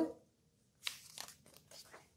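Picture book page being turned: faint paper rustling and crinkling that starts about a second in, in a few short scrapes.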